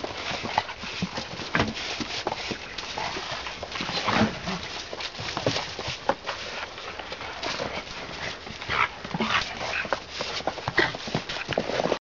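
Two three-month-old German Shepherd puppies play-fighting on snow: quick, irregular scuffling and pawing with short puppy vocal sounds mixed in.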